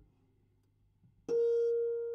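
Paper-strip music box plucking a single loud note on its metal comb about a second in, the tone ringing on and slowly fading, after a few faint mechanism clicks.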